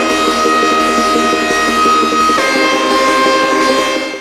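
Outro music: a long held high note that drops back down in pitch about two and a half seconds in, over a busy pulsing accompaniment.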